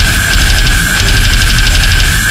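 Deathcore song: heavy distorted guitars and rapid drumming, with a single high note held steadily over them.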